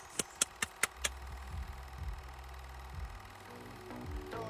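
Five sharp clicks in quick succession, about five a second, followed by a low steady hum, with music coming in near the end.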